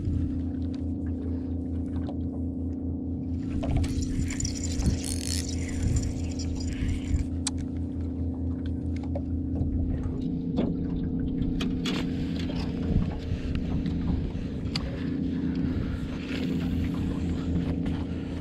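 A boat motor running with a steady, even hum, and a few faint clicks and knocks scattered through.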